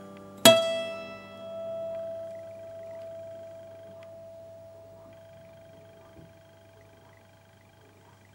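Closing music: a single plucked string note struck about half a second in, ringing out and slowly fading away.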